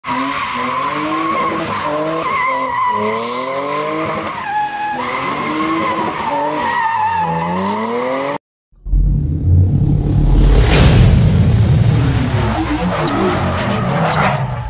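A car spinning donuts: the engine revs up and down over a steady, wavering tyre squeal. About eight seconds in it cuts off abruptly, and after a short gap a louder, deep rumbling sound starts, with a brief sweep a couple of seconds later.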